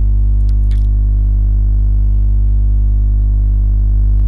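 Loud, steady electrical mains hum in the recording, a low buzz with many overtones that does not change. A couple of faint clicks come about half a second in.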